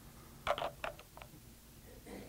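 A few short clicks and knocks as IDE hard drives are handled, a quick cluster about half a second in and two lighter ones just before and after the one-second mark.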